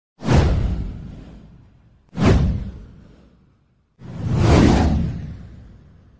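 Three whoosh sound effects of a title animation: the first two hit suddenly and fade away over about a second and a half, the third swells in about four seconds in and fades out.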